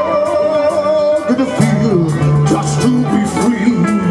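Live heavy metal band playing: a singer holds a long note over the band, then guitar melody lines take over.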